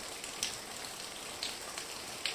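A steady, faint hiss of background noise with a few scattered soft ticks.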